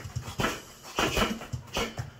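Boxing gloves striking a punching bag on a spring-mounted stand in a quick rhythm, about two hits a second, with the boxer's sharp breaths between them.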